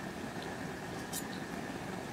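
Steady hiss of an outdoor propane burner running under a large pot of boiling water, with a brief light click about a second in.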